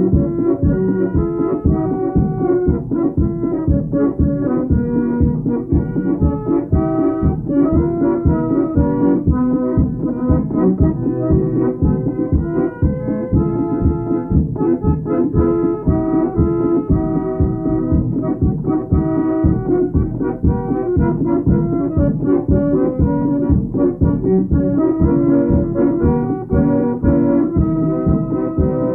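Piano accordion with organ and drum playing an instrumental folk dance tune, the drum keeping a steady beat under the accordion melody.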